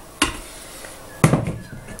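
Two knocks from things being handled and set down, a sharp one about a fifth of a second in and a louder one just past a second in.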